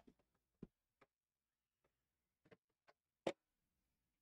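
Near silence broken by a handful of faint, sharp clicks and taps, spaced irregularly, the loudest about three seconds in.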